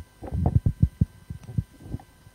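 A quick irregular run of dull low thumps and knocks, typical of handling noise from a handheld microphone being moved in the hand.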